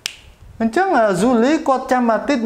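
A single sharp click right at the start, then a man speaking from about half a second in.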